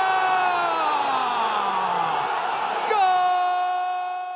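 A Spanish-language TV football commentator's long, drawn-out goal shout, held on one high note and then sliding down, taken up again on the same note about three seconds in. A stadium crowd cheers beneath it.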